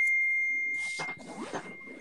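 A single bell-like chime: one clear high ring, struck just before and fading slowly over about two seconds. Fainter muffled sound lies under it in the second half.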